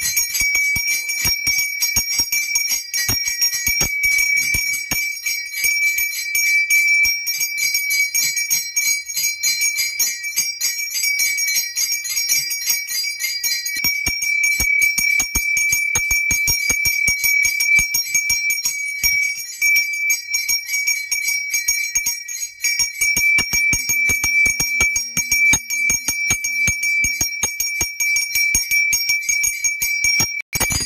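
Brass puja hand bell rung rapidly and without pause, a bright steady ring over fast clapper strikes, as it is rung for an aarti.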